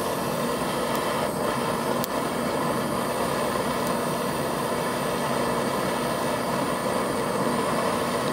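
Handheld gas torch burning with a steady hiss. Its flame is heating a rusted, seized body mount bolt and cage nut to free it.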